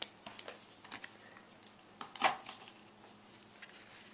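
Scissors snipping the ends of a knotted ribbon: a sharp snip right at the start, faint clicks of handling, and another louder snip a little over two seconds in.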